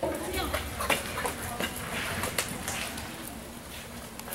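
Horse galloping on soft arena dirt in a barrel-racing run: irregular, muffled hoofbeats, with voices in the background.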